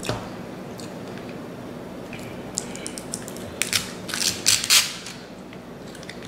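Crunching bites into a crispy deep-fried chicken wing: a short click at the start, then a quick irregular cluster of loud crackly crunches from about halfway through.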